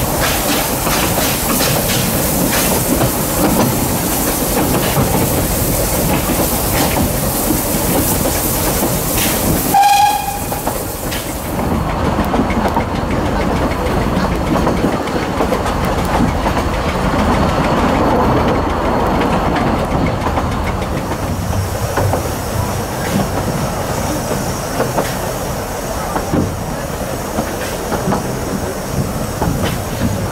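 Narrow-gauge steam train heard from an open carriage: a steady running rumble with the clatter of wheels over rail joints. About ten seconds in, the locomotive's whistle gives one short toot.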